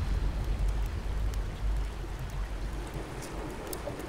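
Small campfire burning, with a few sharp crackles scattered over a steady low rumble.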